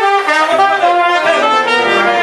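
Live choro music with trumpet and saxophone playing the melody together in short, moving notes.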